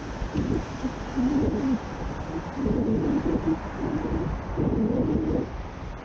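A man's low, wordless vocalising close to the microphone, in several short wavering phrases, over a steady hiss of wind and road noise from riding.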